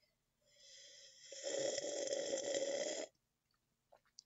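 A person making a long, raspy throat-and-breath noise close to the microphone as an ASMR sound. It starts soft, grows louder about a second in, and stops abruptly.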